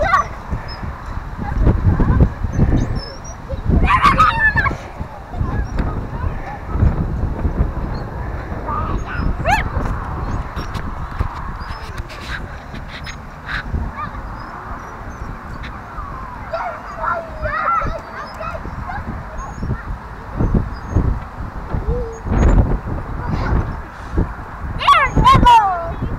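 Wind buffeting the microphone as a playground nest swing moves back and forth, with a few short high squeals now and then.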